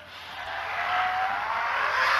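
Cinematic sound effect: a rushing whoosh that swells steadily louder, with a faint whine rising in pitch underneath.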